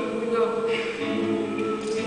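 A woman singing, sliding between held notes over acoustic guitar.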